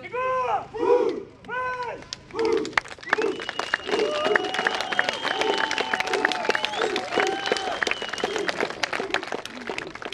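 A squad of soldiers shouts in unison four times in quick succession, about two-thirds of a second apart. From about three seconds in, a crowd claps and cheers, with a few long held notes above it.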